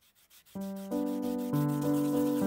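Epoxy resin pendant rubbed by hand on a sanding sponge block, a faint hiss of sanding strokes. Keyboard music comes in about half a second in and is the loudest sound.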